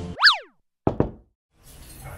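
Cartoonish sound effects added in editing: a quick springy boing whose pitch sweeps up and straight back down, then two sharp knocks in quick succession.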